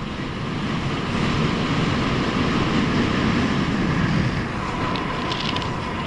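Car driving along a paved road: steady tyre and wind noise over a low rumble.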